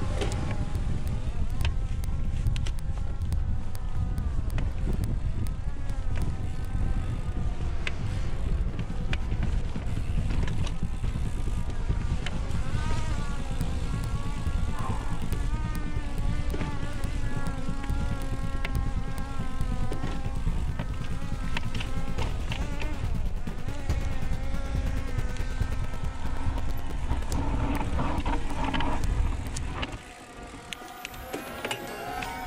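Heavy wind rumble on a bike-mounted camera's microphone, with the clatter of a mountain bike's tyres rolling over sandstone slickrock. Background music with a wavering melody plays over it.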